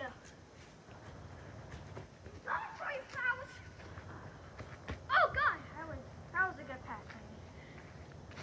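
Distant voices calling out in a few short shouts across a field, the loudest about five seconds in, with a single sharp knock just before it.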